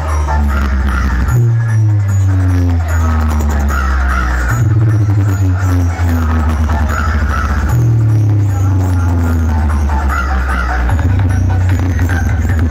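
Loud electronic DJ music from a large outdoor sound-box rig, dominated by heavy sustained bass notes that step to a new pitch about every three seconds, with falling melodic lines above them.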